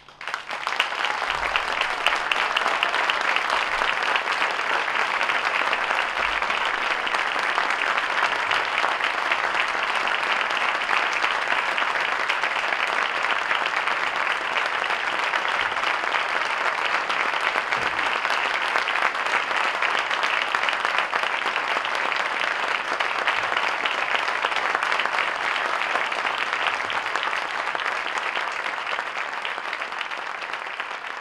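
Audience applauding in a concert hall. It breaks out right after the band's final chord and holds steady, easing slightly near the end.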